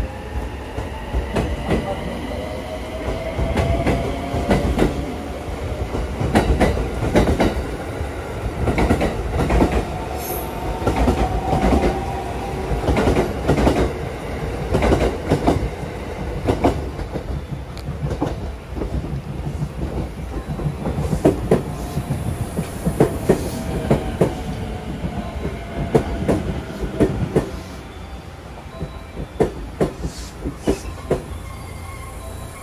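Electric limited express trains running into a station platform, the second a 283-series limited express: a steady rumble with strings of wheel clacks over the rail joints and a thin whine that slides down in pitch as the train slows.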